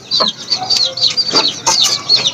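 Chickens clucking over a constant run of rapid, high, falling chirps, with a few short knocks as the birds are handled.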